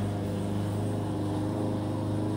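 Lawn mower engine running at a steady pitch, a continuous drone with no change through the moment.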